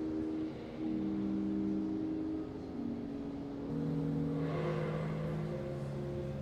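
Pipe organ playing soft, slow sustained chords, the notes changing about every second or so.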